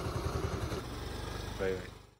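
A motor scooter's small engine idling with an even low pulsing, and a short burst of a man's voice near the end.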